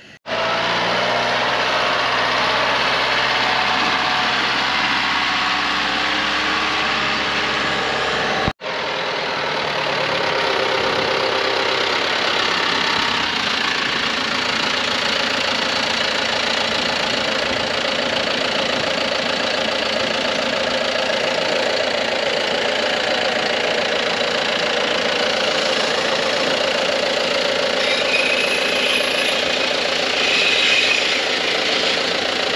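Diesel engine of a John Deere tractor fitted with a front pallet fork, running steadily close by, with a brief break about a third of the way in.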